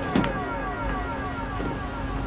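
A whining tone with many overtones, falling slowly and steadily in pitch, with a brief click about a quarter of a second in.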